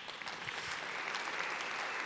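Large theatre audience applauding, the clapping swelling over the first half second and then holding steady.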